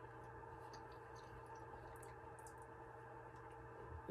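Near silence: steady low room hum with a few faint, soft clicks of a person chewing a bite of soft cookie.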